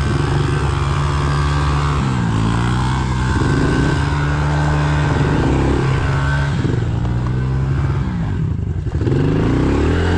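Small Honda pit bike's single-cylinder four-stroke engine being ridden, revs rising and falling several times with the throttle, with one deep drop in revs near the end before it picks up again.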